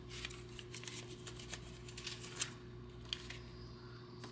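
Paper banknotes and a card being handled: faint rustling of bills with a few light taps and clicks, two of them sharper past the middle.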